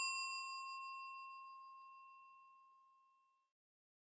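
A single bright bell ding, a sound effect for the subscribe bell, ringing out and fading away over about three seconds.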